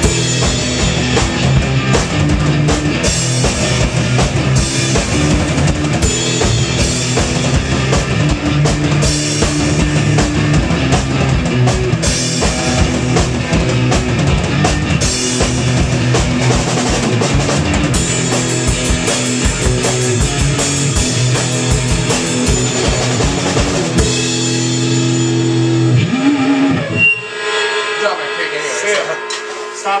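Electric guitar and drum kit playing rock together, with steady drum strokes under the guitar. Near the end the band holds a chord for about two seconds, then the playing stops suddenly, leaving an amplifier hum and a short spoken word.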